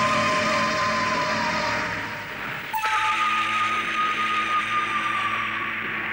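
Dramatic background music of held, sustained notes over a soft wash, changing to a new chord suddenly about three seconds in.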